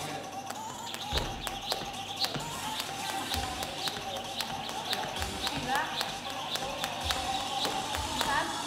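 Jump rope whipping the floor during double-unders: sharp, evenly spaced clicks about three a second that start about a second in, over background music.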